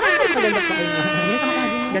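A loud, sustained horn-like tone with many overtones, gliding up at the start and then held steady, cutting off suddenly at the end, with a voice underneath.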